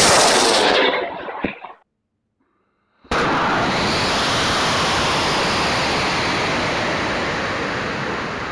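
Aerotech I205 rocket motor burning as the Estes Leviathan lifts off: a loud rushing roar for nearly two seconds that fades out. After a second of silence, a steady loud rush of wind noise on the rocket's onboard camera as it climbs.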